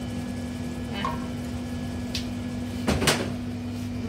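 Minced meat frying in a pan over a steady kitchen hum, then two sharp knocks in quick succession about three seconds in, like a cupboard door or a pot being knocked.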